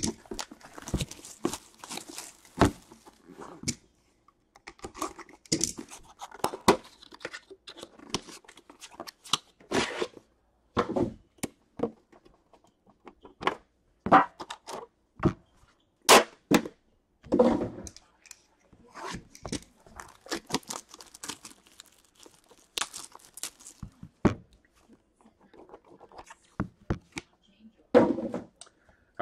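Plastic shrink-wrap torn and peeled off a sealed tin box of trading cards, with crinkling, then scattered clicks and knocks as the box is handled and its lid lifted off.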